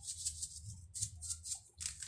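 Hands rubbing seasoning into a raw whole chicken in a plastic tub: a run of short, rasping, shaker-like strokes.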